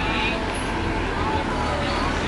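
City street ambience: a steady low rumble of road traffic under the scattered chatter of passers-by.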